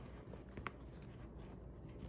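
Faint scratching and rubbing of fingertips on a woven polypropylene rice bag as they pick at the chain-stitched thread along its top seam, with one small tick about two-thirds of a second in.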